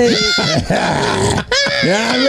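People laughing hard together in high-pitched bursts, with a breathy stretch about halfway through.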